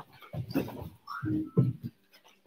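Three short, breathy bursts of exertion from people jumping up out of a deep squat and landing again.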